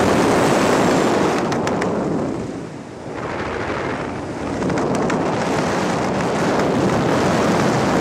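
Loud, steady rush of freefall wind buffeting the skydiving camera's microphone, dipping briefly about three seconds in.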